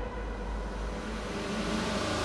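A quiet breakdown in a hardstyle DJ mix: sustained synth chords over a noise wash, with no kick drum, slowly building in loudness.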